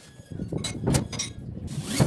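Irregular knocks, scrapes and handling noises from hand work on a wooden wardrobe door, several short bursts, the loudest near the end.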